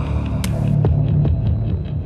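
Deep, steady drone from film-trailer sound design, with a sharp click about half a second in and a few fainter ticks after it.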